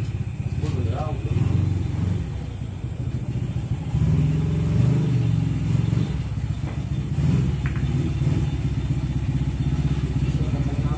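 A low engine hum runs steadily under background voices. A single click of billiard balls comes shortly after the middle.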